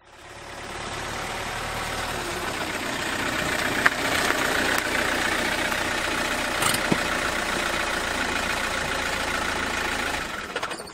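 A car engine idling steadily, fading in over the first second, with a couple of brief clicks about four and seven seconds in.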